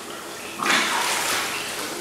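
Koi splashing at the water surface as they feed, with a burst of splashing about half a second in that slowly dies away.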